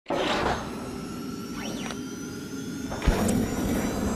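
Animated intro sting for the eHow tech logo: swishing, sweeping sound effects over steady electronic tones, with a short low hit about three seconds in.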